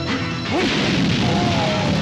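Dubbed film sound effects: a sharp hit at the very start, then a loud crashing blast from about half a second in as a pyrotechnic charge goes off, over steady background music.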